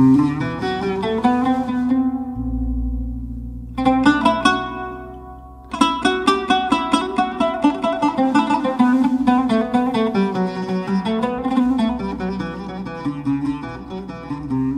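Oud played live: a loud plucked chord that rings out, then after a short pause phrases of plucked notes that turn into quick, dense runs from about six seconds in. A deep low note sounds underneath from about two seconds in.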